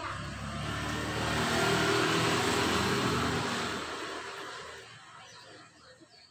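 A motor vehicle passing by, its engine and tyre noise building to a peak about two seconds in and then fading away by about five seconds.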